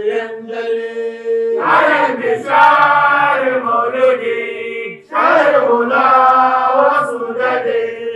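Unaccompanied male voices chanting an Arabic qasida in praise of the Prophet. A long held note gives way to two loud sung phrases, one starting about a second and a half in and the next about five seconds in.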